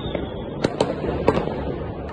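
Fireworks going off far away across a city: a continuous low rumble of many distant bangs, with several sharper cracks in the second half.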